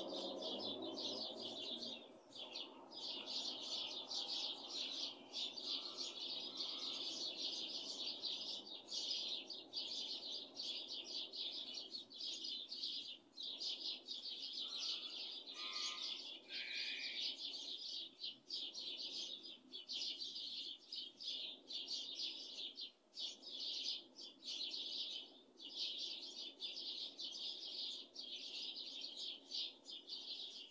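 A dense chorus of many small birds chirping at first light, a continuous high twittering, with a couple of separate lower calls about halfway through.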